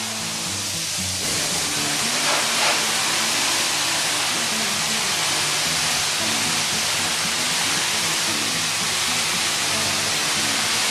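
Pressure washer spraying water onto an RV's siding, a steady hissing spray that rinses off the oxidation cleaner before it can dry. Background music plays underneath.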